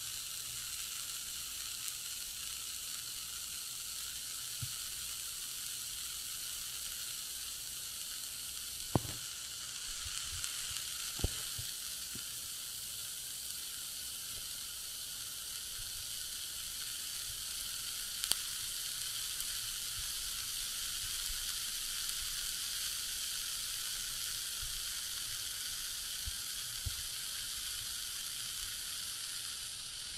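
Ear candle burning at the ear: a steady hiss with a few sharp crackles, about nine, eleven and eighteen seconds in.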